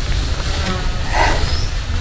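Steady low rumble of wind on the microphone, with a soft rustle of nylon hammock fabric about a second in as a person leans back into the hammock.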